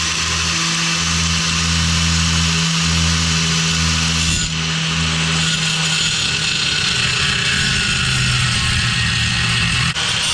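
Electric angle grinder running steadily, its cutting disc grinding through aluminum diamond plate, with a brief dip in the sound about four and a half seconds in.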